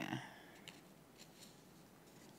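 A spoken word ends just at the start, then a quiet call line with a few faint clicks.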